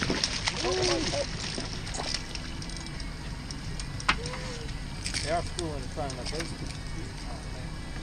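Hooked striped bass thrashing and splashing at the surface beside the boat as it is lifted out of the water, a quick run of splashes over the first couple of seconds. A single sharp knock about four seconds in.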